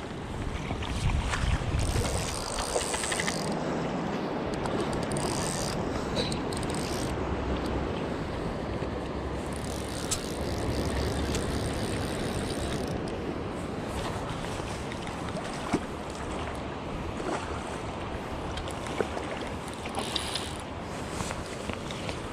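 River current rushing and lapping around the angler's legs, with wind rumbling on the microphone and a few brief sharp ticks.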